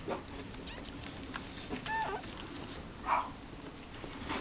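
A newborn Mame Shiba puppy gives a faint, short squeak about two seconds in, amid soft sniffing and rustling from the mother dog nosing it in the bedding.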